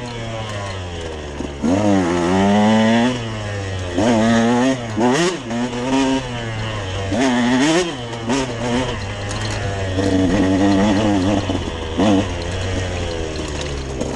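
Dirt bike engine revving up and falling back over and over, every second or two, as it is ridden along a trail.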